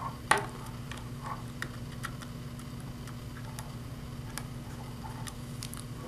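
Faint scattered clicks and light ticks as wire leads and a screwdriver are worked into a small screwdriver-opened terminal block on a motor drive's circuit board. The sharpest click comes about a third of a second in. A steady low hum runs underneath.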